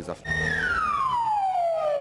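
Siren on a drug-control service van wailing: a high tone holds briefly, then glides steadily down in pitch, over a low steady hum.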